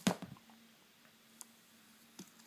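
A single sharp tap at the very start, then a couple of faint ticks, over quiet room tone with a faint steady hum.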